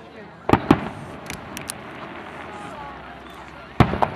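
Aerial fireworks shells bursting: two loud bangs close together about half a second in, a few fainter pops after them, and another loud bang near the end.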